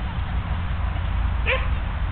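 A dog gives a single short bark about one and a half seconds in, over a steady low rumble.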